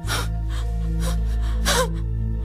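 A woman crying: three gasping sobbing breaths, the last breaking into a short wavering cry. They sound over a held, sustained chord of dramatic underscore music.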